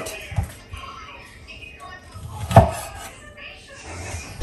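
Knife chopping pig tail on a wooden cutting board: a few light knocks, then one sharp chop about two and a half seconds in.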